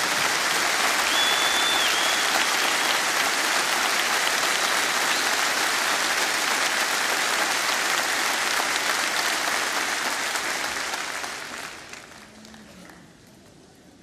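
Applause from a large concert audience, steady for about eleven seconds and then dying away, with a short whistle from the crowd about a second in.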